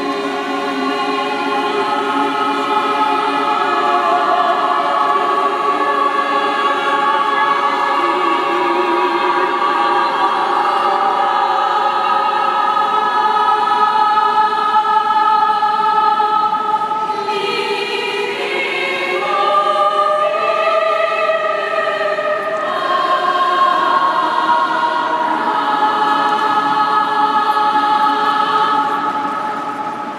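A large choir of mostly women's voices singing slow, sustained chords that shift from one to the next, in a large stone domed interior. The sound swells and then fades out near the end.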